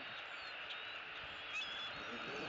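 A few brief, thin, high bird chirps over a steady outdoor hiss, the loudest a short rising chirp near the end.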